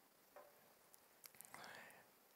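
Near silence: room tone over the church sound system, with a few faint clicks and a soft breathy sound near the end.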